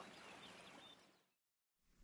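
Near silence: a faint outdoor background hiss that drops to complete silence about one and a half seconds in.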